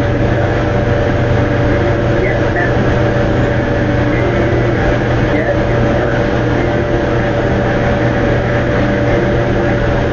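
Steady, unbroken hum and hiss with a constant low drone and a thin steady mid-pitched tone over it. A few faint, indistinct voice-like wisps sit within the noise.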